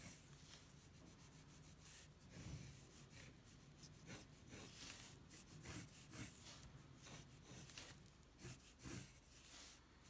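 Pencil lead scratching faintly on paper in short, repeated strokes as straight lines are drawn lightly.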